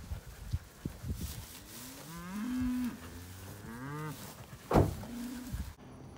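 Beef cattle mooing in a herd: one long moo that rises and then holds, followed by a shorter moo near the end.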